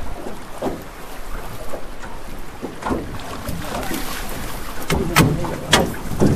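River water rushing around a drift boat, with wind buffeting the microphone, and a few sharp clicks near the end.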